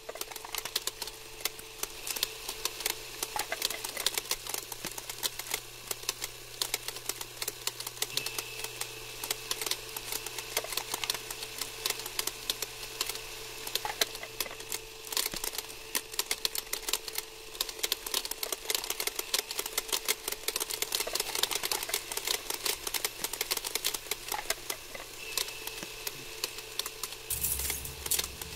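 A film projector running: a dense, fast mechanical clicking over a steady low hum, with a faint high whine that comes and goes.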